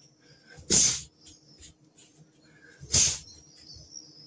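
Two short, loud rushing bursts about two seconds apart, one with each swing of a repeated arm-swinging exercise, over a faint steady high whine.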